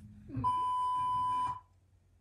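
Steady test-tone beep at about 1 kHz, lasting about a second and cutting off abruptly: the tone that goes with TV colour bars.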